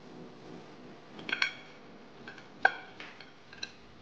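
Kitchen utensils and dishes clattering: a handful of sharp, ringing clinks of metal and crockery knocked together, with a quick cluster just over a second in and the loudest single clink near the three-quarter mark.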